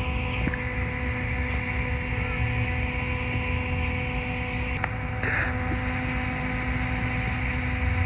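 A small handheld battery fan running close to the microphone: a steady motor hum, with a low rumble of air blowing across the mic.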